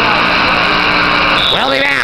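Gymnasium crowd noise with a steady held tone that stops about a second and a half in, then a voice shouts near the end.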